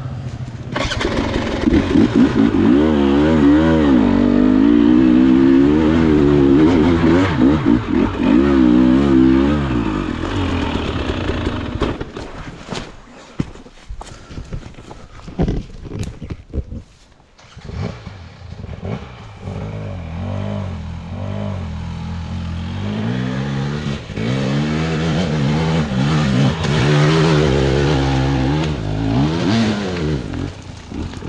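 KTM 300 XC-W two-stroke single-cylinder dirt bike engine running under a rising and falling throttle as it is ridden over a rough trail. About halfway through it drops away for a few seconds, with scattered knocks, then picks up again and keeps revving up and down.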